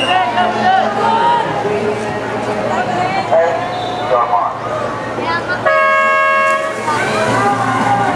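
Electronic starting signal for a swimming race: one steady beep lasting nearly a second, about six seconds in, sending the backstroke swimmers off. Voices of the crowd run underneath before and after it.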